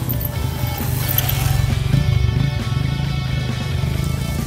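Background music, with an off-road motorcycle's engine passing close by underneath it, loudest about two seconds in.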